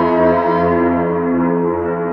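Yaybahar, its strings bowed and coupled through long coiled springs to frame drums, sounding a sustained, reverberant drone rich in overtones over a deep low hum. The highest overtones fade away about a second in.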